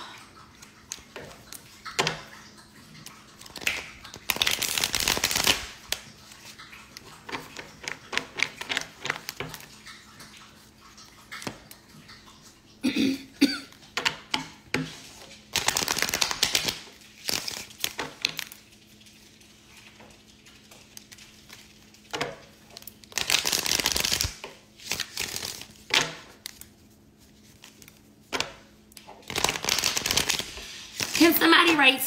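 A tarot deck being riffle-shuffled on a table. There are three riffles, each lasting about a second and a half, with the cards tapping and clicking in between as they are squared and handled.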